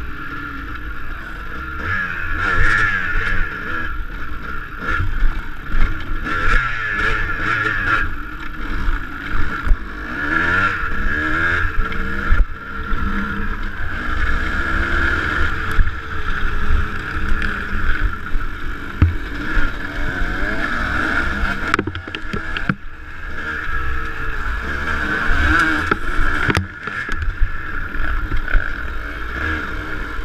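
Dirt bike engine revving up and down as the bike is ridden hard along a rough trail, heard close up from the rider's camera, with a few sharp knocks from bumps.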